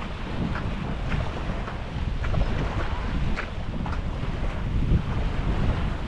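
Wind rumbling on the microphone, with small waves washing on a sandy shore underneath and a few faint clicks.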